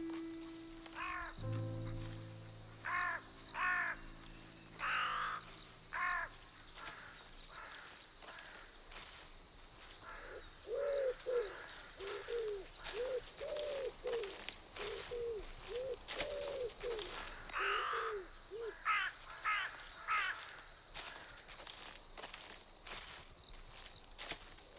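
Woodland birds calling: short, high chirping calls in small clusters, and from about ten seconds in a steady run of lower repeated notes for several seconds. Over the first few seconds a held musical chord dies away.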